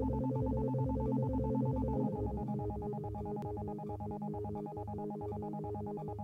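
Improvised electronic music from synthesizers and sequencers: a repeating, pulsing bass figure under a steady held tone. The pattern shifts to a new rhythm about two seconds in.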